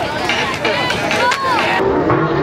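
Crowd of spectators talking over one another, with a few sharp clicks or knocks mixed in. The sound changes abruptly near the end.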